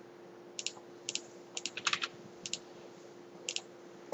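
About half a dozen light, irregular clicks at a computer, several coming in quick pairs, over a faint steady hum.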